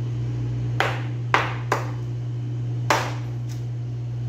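Knife chopping through raw chicken into a plastic cutting board: four sharp knocks, the loudest about a second and a half in, over a steady low hum.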